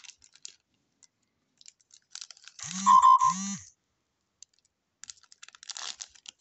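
Foil trading-card pack wrapper crinkling and being torn open, with scattered light crackles that thicken near the end. About three seconds in, a short, loud two-part vocal sound rises over the crinkling.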